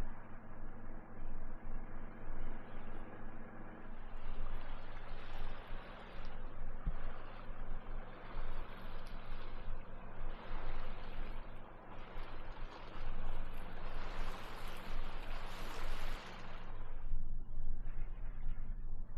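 Sailing yacht under engine with sails up: the engine's steady low hum beneath the rush of water along the hull, the water noise swelling and fading in waves and loudest a little past the middle.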